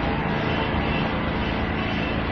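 Steady background drone with a low hum and hiss, even in level throughout, heard in a pause between spoken phrases.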